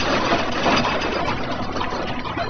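Earthquake shaking a building: a loud, even rushing noise that slowly eases off.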